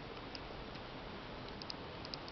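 A few faint, light clicks of small plastic and rubber parts being handled on a garden pressure sprayer's plastic pump housing, over low steady room noise.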